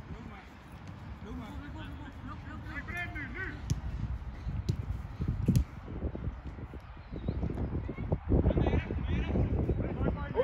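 Youth football match sounds: distant shouts of players on the pitch, a few sharp knocks like the ball being kicked, and a low rumble from wind on the microphone.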